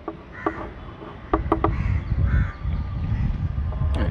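Chalk on a blackboard: a few sharp taps and short strokes in the first two seconds as an answer is written and boxed. A low rumble comes in underneath about a second in, and a bird calls faintly in the background.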